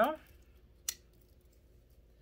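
A single sharp metallic click about a second in, from pocketknives being handled: a multi-tool part clicking as it is moved.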